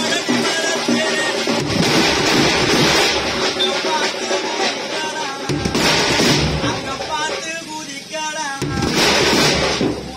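Band of bass drums and hand-held frame drums playing in loud bursts, about three times, with a man's voice calling or singing in the gaps between them.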